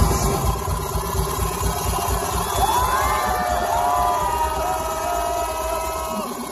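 Electronic dance music from a live DJ set, played loud through a festival sound system, with a pulsing bass and a cheering crowd. High gliding tones come in about halfway through.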